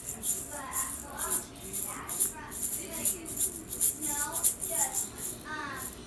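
Voices over a steady rhythmic shaking jingle, about two to three strokes a second, like a shaker or tambourine.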